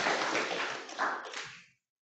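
Audience applause fading out, with a last swell about a second in, and dying away about one and a half seconds in.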